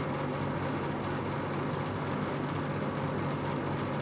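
Steady background hum and hiss: a constant low drone with an even hiss over it, unchanging throughout.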